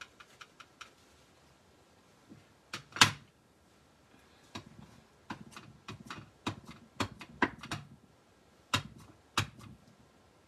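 Hard plastic craft supplies being handled on a table: a clear acrylic stamp block and a plastic-cased ink pad picked up, set down and knocked together, in a string of short clicks and taps. The sharpest knock comes about three seconds in, and there is a quicker run of taps in the second half.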